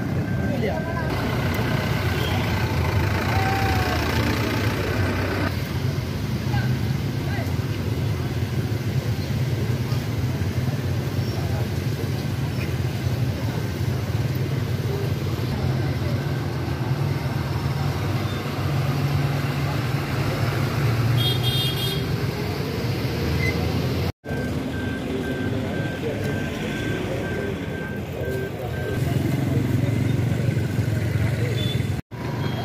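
Roadside street ambience: a steady low engine rumble from vehicles, with a crowd's voices talking over it and a short high-pitched beep about two-thirds of the way through.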